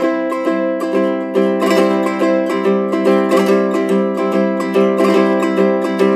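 Low-G ukulele strummed with metal banjo fingerpicks through a C, Am, Dm, G7 chord sequence in steady down-up eighth-note strokes. A drag leads into the first beat: two quick upstrokes by the index and middle fingerpicks, then a thumbpick downstroke on the beat.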